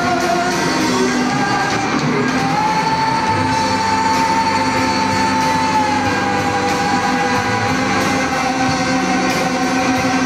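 Live rock band playing in a large hall: electric guitars, bass and drums with a singer. About two seconds in, a long high note is held for several seconds, then drops a step and carries on.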